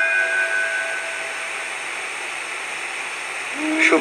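A held chord of background music fades out over the first two seconds, leaving a steady hiss.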